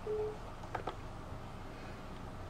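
A short single-pitch beep from the laptop's speaker as a Windows permission prompt pops up, followed a little under a second later by a couple of faint clicks.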